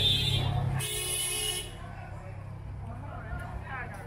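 Busy nighttime street ambience. A steady high-pitched tone over a low hum stops about a second in and gives way to a brief hiss, then quieter traffic and voices.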